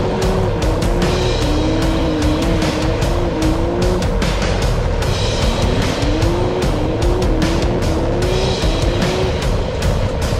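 Can-Am Maverick X3 side-by-side's three-cylinder engine revving hard, its pitch climbing in repeated rising glides that drop back and climb again, with a short lull about four seconds in. Music with a steady beat plays over it.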